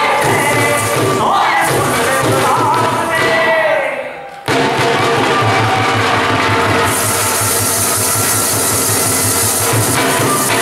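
A Punjabi folk song sung over a dhol drum beat. The music fades briefly about four seconds in, then comes back suddenly with a steady drum rhythm.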